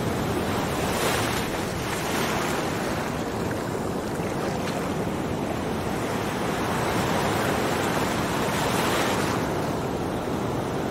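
Ocean surf with wind: a steady wash of noise that swells twice, about a second in and again near the end.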